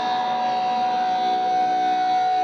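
Live electronic drone music played through the stage PA: one high tone held steadily over lower sustained drones, with no beat.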